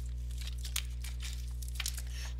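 Someone drinking water: faint, irregular clicks and crinkles of the drink being handled and sipped, with two small soft bumps, over a steady electrical hum.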